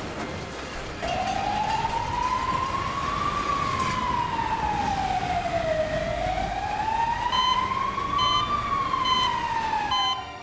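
Emergency vehicle siren wailing, slowly rising and falling in pitch through two long cycles over steady background noise. Faint, evenly spaced electronic beeps come in near the end.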